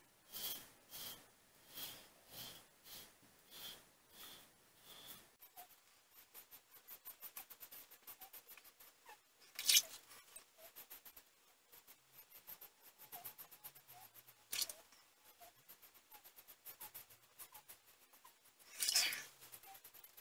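Vintage Gillette Flare Tip safety razor with a Feather blade scraping through lathered stubble on a first pass with the grain: faint, scratchy short strokes about two a second for the first few seconds, then finer, quieter scraping. Three louder brief noises come in the middle, a few seconds later and near the end.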